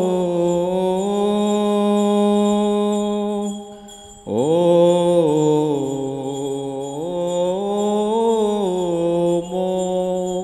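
A single man's voice chanting a slow West Syriac liturgical melody of the Holy Qurbana, holding long notes and stepping between pitches. The chant breaks off about three and a half seconds in and resumes with a sliding rise just after four seconds.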